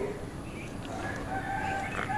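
A rooster crowing faintly: one long, fairly level call that starts about half a second in and carries on to the end.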